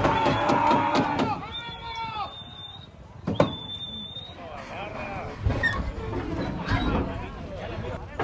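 Men at the starting gates yelling long, high calls after the horses as a match race gets under way, with sharp metallic clanks and knocks from the gate stalls and one loud knock about three and a half seconds in.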